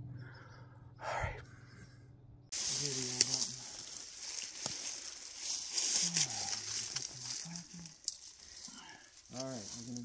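A faint breath or whisper, then, after a cut about two and a half seconds in, a steady hissing rustle of people pushing through dry brush and leaf litter, with a few sharp snaps and low murmured voices.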